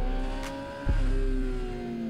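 Honda CBR600RR inline-four sport-bike engine heard on board at track speed in third gear, its pitch climbing slightly and then easing down as the bike is held up behind slower traffic, over steady wind and road noise. A sharp click comes just under a second in, after which the sound gets louder.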